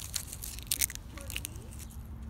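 Dry bark pieces being snapped and crumbled between the fingers: a run of crisp crackles, loudest a little under a second in.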